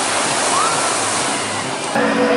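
Spray from a log flume boat's splashdown: a steady rush of falling and churning water.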